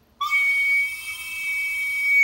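Soprano recorder squeaked on purpose: a shrill, steady high squeak that starts a moment in and is held for about two seconds.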